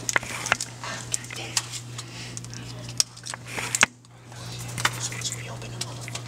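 Light, irregular clicks and small clatters as birthday-cake candles are handled, over a steady low hum.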